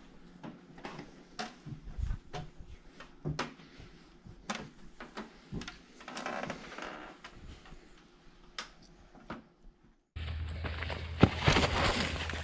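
Scattered knocks, clicks and rustles of people moving and handling things in a small room. After a sudden break, louder outdoor noise with a low steady rumble and a heavy thump near the end.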